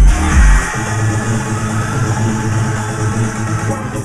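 Loud electronic dance music played over a nightclub sound system. The kick drum stops under a second in, leaving held synth tones without a beat.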